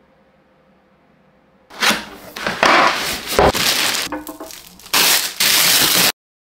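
Clear plastic bag crinkling and rustling as it is handled, in several loud spells starting about two seconds in, with a dull knock partway through.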